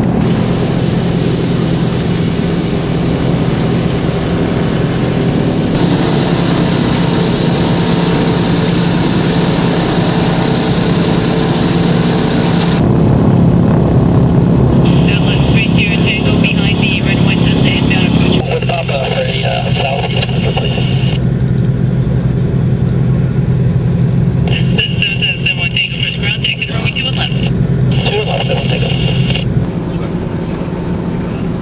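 Douglas DC-3's radial piston engines running steadily, heard from inside the cabin as a low drone. Several bursts of high crackle come through in the second half.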